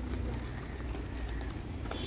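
A large flock of pigeons flapping their wings as birds take off and land, with scattered wing claps over a low steady rumble.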